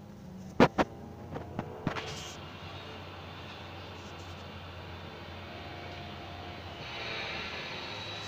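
Cabin noise inside a moving city bus: a steady low engine hum. Two sharp knocks come about half a second in, the loudest sounds here, followed by a few lighter clicks. Near the end a hiss swells.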